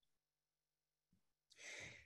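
Near silence, then a woman's short breath intake in the last half second.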